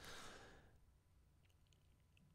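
A soft breath let out near the microphone, fading away about half a second in, then near silence with a few faint ticks.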